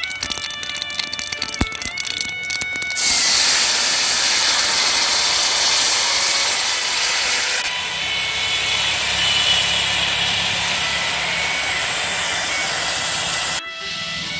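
Liquid poured into a hot wok over mustard paste and dried red chillies about three seconds in, starting a loud, steady sizzle and bubbling that eases a little after about five seconds and carries on.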